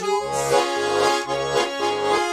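Russian garmon (button accordion) playing an instrumental passage between sung lines: a melody over a steady bass-and-chord accompaniment pulsing about twice a second.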